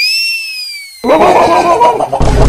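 A high, whistle-like comedy sound effect that swoops up in pitch and then slides slowly down. About a second in, a rough, jumbled noise joins it.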